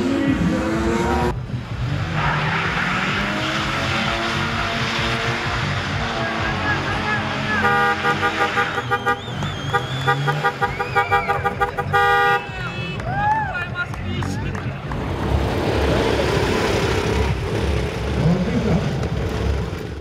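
Cars drifting: engines revving with tyres squealing on the asphalt. A car horn sounds in a long blast about eight seconds in and a short one about twelve seconds in.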